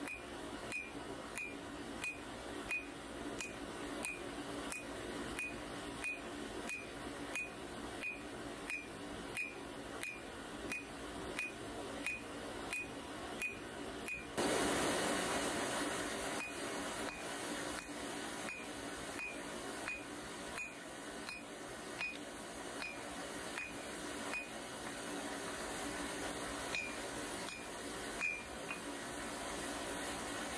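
Hand hammer striking a red-hot bar of bearing steel on an anvil, a steady rhythm of about two blows a second, each with a short metallic ring from the anvil. About halfway through a steady rushing noise comes in under the blows.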